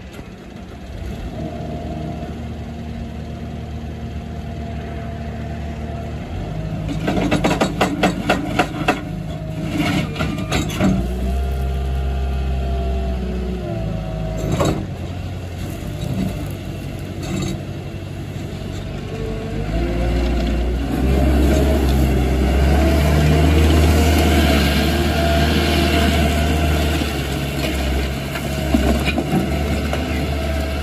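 Caterpillar 277D compact track loader's diesel engine running and working its hydraulics, with a run of sharp knocks about seven to eleven seconds in as the lift arms and bucket move. In the last third it drives across gravel, and the engine and tracks grow louder.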